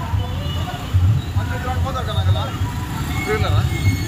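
Motorcycle and scooter engines running as a line of two-wheelers rides slowly past close by, a low pulsing rumble. Voices are heard over them near the middle.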